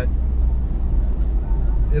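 A 2021 Ford Bronco's 2.7-litre twin-turbo V6 pulling under acceleration in normal (not sport) mode, heard from inside the open-top cabin as a steady low rumble mixed with road and wind noise.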